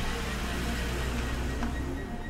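A car pulling away from the kerb, its engine and tyres giving a steady low rumble, with quiet background music over it.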